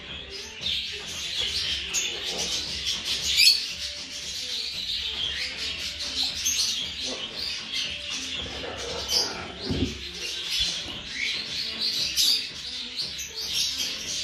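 Blue forpus parrotlet chicks chirping in a continuous, high-pitched chatter of short calls, the begging calls of nestlings. A sharp click about three and a half seconds in and a low thump near the end.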